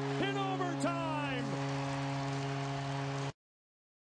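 Arena goal horn sounding a steady chord, with the crowd cheering and voices shouting over it, just after the overtime winning goal. The sound cuts off abruptly a little over three seconds in.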